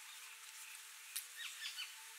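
A small bird calling faintly, a quick run of short chirps with falling pitch about halfway through, just after a single sharp click, over a steady outdoor background hiss.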